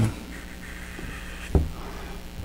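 Faint scrubbing of a watercolour brush on wet hot-press paper, lifting paint out, over a steady low electrical hum. A short low thump comes about one and a half seconds in.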